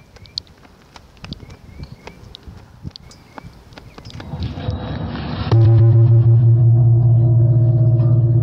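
Faint outdoor sounds with a few short high chirps, then a noise swells and a large bossed gong is struck once about five and a half seconds in, ringing on loudly with a deep, steady hum and several higher tones.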